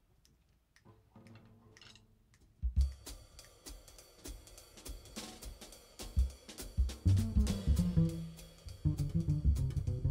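A jazz combo's upright bass and drum kit start a blues tune a little under three seconds in, after a short quiet pause, with cymbal and drum strokes over plucked bass notes that grow stronger in the second half.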